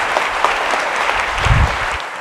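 Audience applauding, a dense run of many hand claps, with a low thud about one and a half seconds in.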